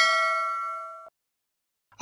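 A single bell-like ding sound effect, the chime of an animated subscribe button, ringing with several clear pitches and fading, then cut off abruptly about a second in.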